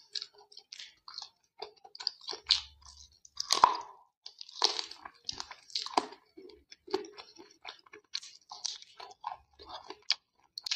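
Close-miked chewing of chicken and rice eaten by hand: an irregular run of short mouth clicks and crunches, the loudest a little over three and a half seconds in.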